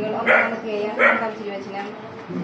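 A woman's voice reading a prayer aloud from a book in a slow, sing-song recitation. Two short, sharp, louder sounds break in, about a third of a second and a second in.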